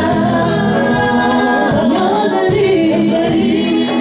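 A small vocal group, two women and a man, singing together in harmony into microphones and holding long notes.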